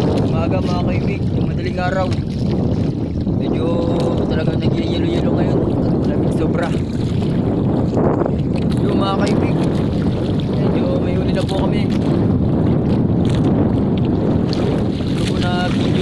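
Boat engine running steadily, with wind buffeting the microphone.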